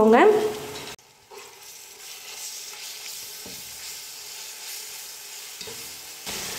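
Fried onions and ginger-garlic paste sizzling in hot oil in a steel pot, stirred with a spoon. The steady sizzle starts about a second in.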